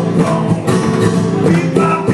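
Acoustic guitars playing an instrumental passage of a live song, with strummed and picked notes.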